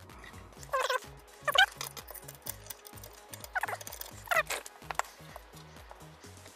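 RP Toolz mitre cutter chopping plastic angle profile: four short squeaks in two pairs, about a second in and again about three and a half seconds in, with a few light clicks. Background music with a steady beat runs underneath.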